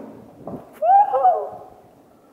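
A boy's brief wordless vocal cry, rising then falling in pitch, about a second in, just after a dull thump.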